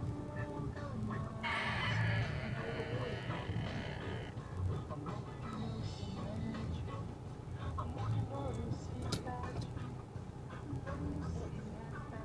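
Low, steady rumble of an idling vehicle engine heard from inside the cabin, under faint voices and music. A brief rasping noise runs from about a second and a half in to about four seconds.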